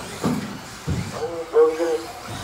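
A man's voice talking in the second half, with a couple of faint low thuds before it.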